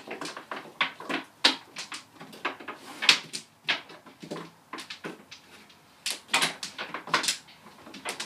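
Mahjong tiles clacking as players draw, set down and discard them on the felt table and against other tiles: a run of sharp, irregular clicks, several a second.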